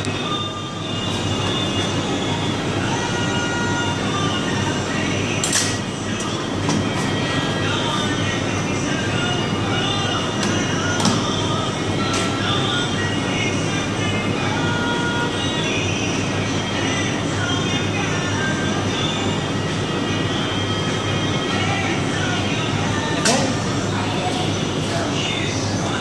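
Steady mechanical hum and hiss of a refrigerated meat-cutting room, with a few sharp clicks and knocks from handling at the work station, and faint background voices or a radio under it.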